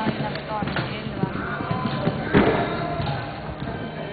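Dull thuds of a show-jumping horse's hooves cantering on sand arena footing, with one heavier thud a little past halfway, over background music and voices.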